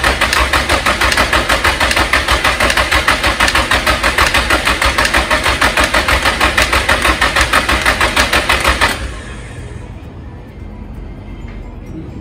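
Starter cranking a Nissan SR engine for about nine seconds without it catching, with a fast, even clicking on each turn ("kachin kachin"), which the owner suspects may be a collapsed hydraulic lash adjuster. The cranking cuts off suddenly about nine seconds in.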